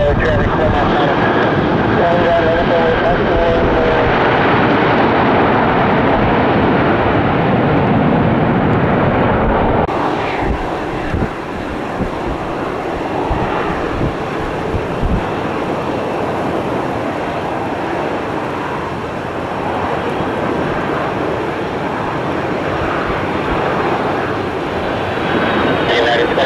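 Continuous jet airliner engine noise, first from a Delta Airbus A321 moving along the airfield. After an abrupt change about ten seconds in, it comes from a Delta Boeing 757 on final approach with its gear down.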